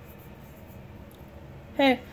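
Faint background sound of a television programme playing in the room, steady and low, with a hesitant spoken 'uh' cutting in near the end.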